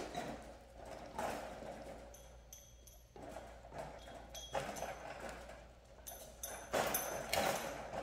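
Dog gnawing at a large bone, its teeth scraping and clicking on it in short, irregular bouts.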